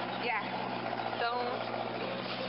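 Budgerigars chattering, with short wavering warbles about a quarter second and again just over a second in, over a steady low hum.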